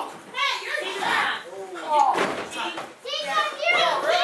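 Children's voices shouting and chattering over one another, several high voices at once, with no break.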